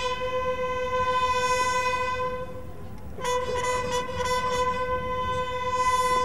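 Bugles sounding a ceremonial salute call: one long held note, a short break about two and a half seconds in, then a second long note at the same pitch.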